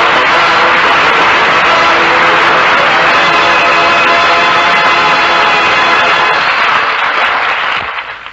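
Studio audience applauding while a radio orchestra plays a short musical bridge at the close of a comedy sketch, fading out near the end; the sound is thin and muffled, as on an old 1945 radio transcription.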